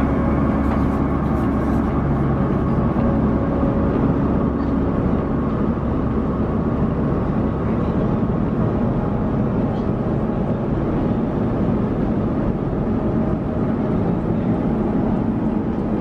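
Steady roar of cabin noise inside an Airbus A350-900, with air and engine noise running evenly and a faint low hum beneath.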